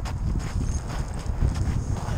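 Wind buffeting the microphone of a GoPro Session on a paraglider in flight: a low rumble broken by irregular knocks.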